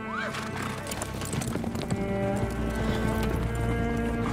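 Orchestral score with held low bowed strings, over horses' hooves clip-clopping and a horse whinnying just after the start.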